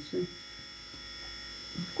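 A steady, faint electrical buzz with a thin high whine, unchanging throughout, under a pause in conversation.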